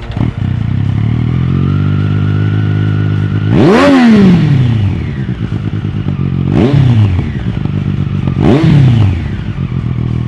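Triumph three-cylinder motorcycle engine running through a Zard aftermarket exhaust. It comes in just after the start, idles steadily, then is revved three times, each rev rising sharply in pitch and dropping back to idle. The first rev is the biggest.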